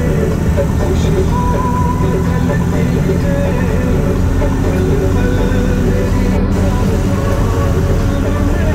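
Steady engine and road rumble of a moving road vehicle heard from on board, with music playing over it.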